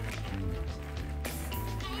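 Background music: sustained low notes that change a little past halfway.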